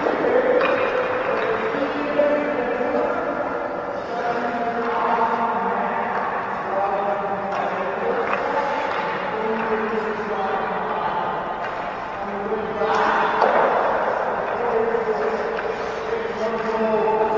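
Music with a singing voice, its notes held for a second or two at a time, filling a reverberant space. A brief noisy burst about thirteen seconds in.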